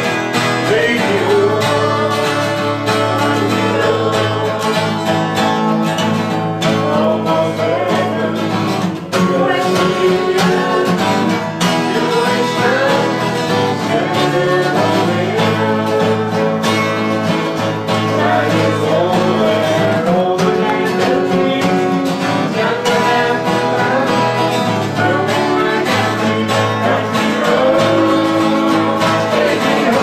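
Several acoustic guitars strummed together, with voices singing along.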